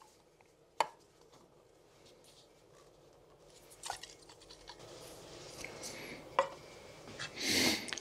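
Small lidded aluminium tins of solvent being handled and shaken by gloved hands. A light click about a second in, then from about halfway a soft rustling, sloshing handling noise with a few small clicks, the solvent being agitated in the sealed tins.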